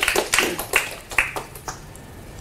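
Small audience clapping, the applause thinning out and dying away about one and a half seconds in.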